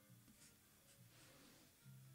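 Faint scratchy strokes of an ink brush's bristles on a shikishi card: two short strokes, then a longer one about a second in, under quiet music.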